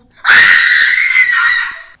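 A young woman's loud, harsh, acted scream, a single sustained shriek of about a second and a half that breaks off just before the end: the monster shriek of a possessed character in a staged horror scene.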